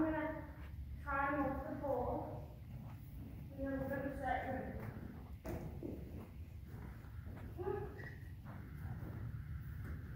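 A woman's voice in several short spoken phrases, with one sharp click about five and a half seconds in.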